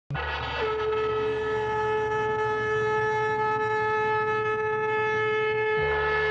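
Logo intro sound: a single long, steady horn-like note, held unchanged for over five seconds, over a low rumble that stops shortly before the end.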